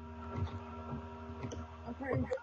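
A steady low hum with several overtones, and a few faint clicks.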